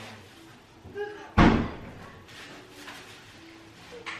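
A single loud bang about a second and a half in, sudden and heavy, dying away within half a second, with faint children's voices around it.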